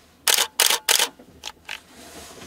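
Shutter and mirror of a Canon EOS 6D full-frame DSLR body firing three times in quick succession, each release a sharp clack, followed by two fainter clicks.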